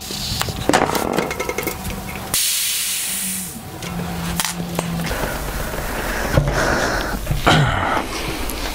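Air hissing out of tyre valves as a wheelbarrow tyre and a bicycle tyre are let down, with a loud burst of hiss a couple of seconds in and another stretch near the end, between clicks and knocks from handling the wheels.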